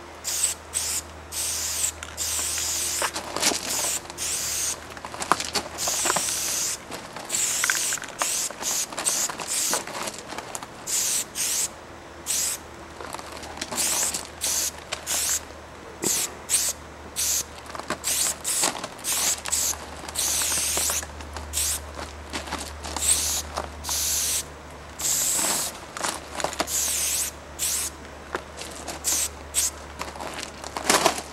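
Aerosol spray paint can with a fat cap spraying thick yellow paint in quick hissing strokes, one after another with short breaks, as the letters of a tag are written.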